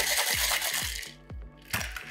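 Cocktail shaker shaken hard, ice rattling against the metal tin, stopping about a second in; a sharp knock near the end as the shaker is broken open.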